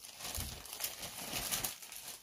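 Rustling and crinkling from hands handling jewelry and its packaging, a steady run of small crackles that eases off near the end.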